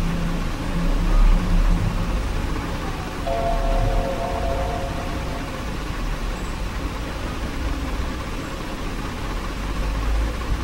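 Mac startup chime, a single sustained chord about three seconds in that lasts about two seconds, as the computer reboots partway through an OS X installation. A steady background hum runs underneath.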